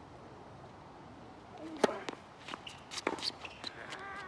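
Tennis racket striking the ball on a second serve, a single sharp crack about two seconds in, followed by a few lighter knocks of the ball in play.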